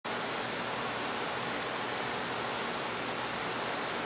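A steady, even hiss and nothing else: room tone with recording noise.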